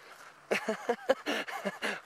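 A man's voice making short, repeated non-word sounds, about five a second, starting about half a second in.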